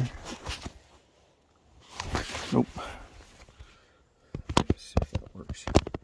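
Handling noises at close range: a few light clicks, a short muffled voice-like sound about two seconds in, then a quick, irregular run of sharp clicks and knocks near the end.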